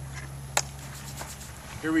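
Quiet outdoor background with a steady low hum and a single sharp click about half a second in.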